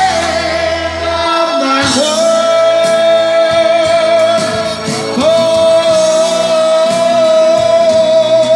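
A man singing live into a microphone through a PA over backing music, holding two long notes, the second beginning about five seconds in.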